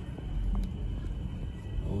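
Low, steady rumbling noise with one faint tick about half a second in.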